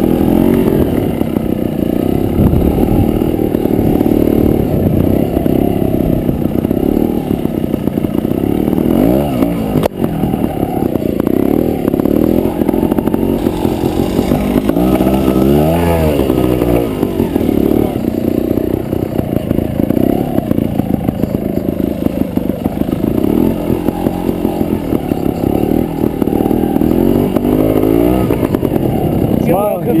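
Trials motorcycle engine running close to the microphone at low, steady revs, with sharp rises and falls in revs about nine seconds in and again around fifteen to sixteen seconds in. A man's voice laughs and speaks at the very end.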